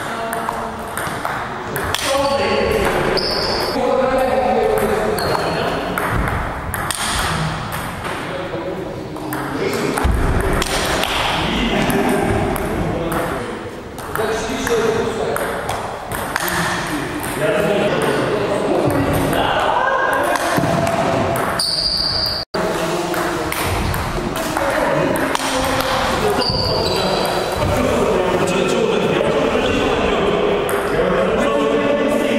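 A table tennis rally: the celluloid ball clicks off paddles and the table in quick, irregular hits, with people's voices talking in the background of a large hall.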